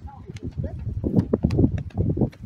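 Several people talking quietly among themselves, with scattered short clicks and knocks mixed in.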